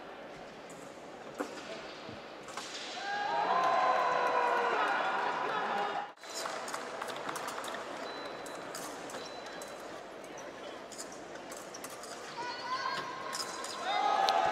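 Épée bout in a large hall: fencers' feet stamping on the metal piste and sharp clicks of blade contact, with a raised, shouting voice for a few seconds in the first half.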